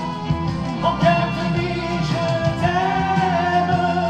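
A man singing a French love song into a handheld microphone over recorded backing music, with long held notes.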